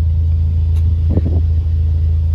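VW Golf R Mk7's turbocharged 2.0-litre four-cylinder engine idling, a steady low exhaust rumble heard through the car's open door.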